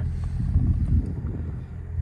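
Low, uneven rumble of handling noise as a phone is moved around inside a car cabin, with no clear steady tone.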